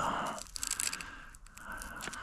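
Hook-and-loop battery strap on an Arrma Kraton RC truck being pulled open: a tearing rasp at the start, a few small clicks, then a fainter rasp near the end.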